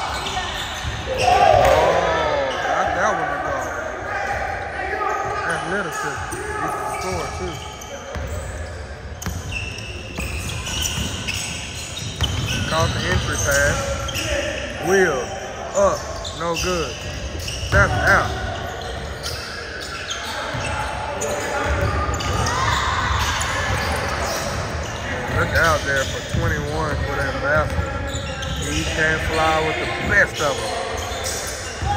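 Basketball being dribbled and bouncing on a hardwood gym court during live play, with indistinct voices of players calling out, echoing in the hall.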